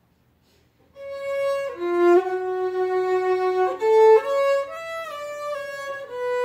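Solo violin bowed, coming in about a second in and playing a slow melody of long held notes that step from one pitch to the next.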